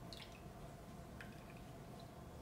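A few faint drips of soy milk falling into a small yogurt jar.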